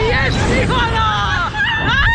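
Two women laughing and shrieking together, high voices overlapping and sliding up and down, over a low wind rumble on the microphone as the ride capsule swings through the air.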